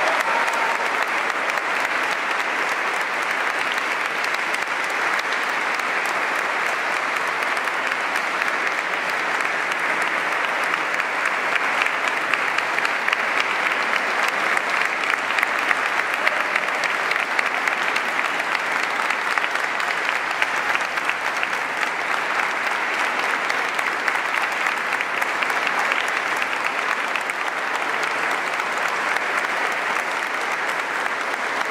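Audience applauding, a dense, steady clapping that holds at an even level throughout.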